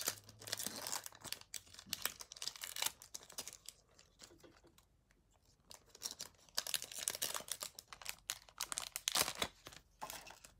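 Foil Pokémon booster pack wrapper crinkling and tearing as it is torn open and handled by hand. The sound comes in two dense spells of crackling with a quieter stretch in the middle.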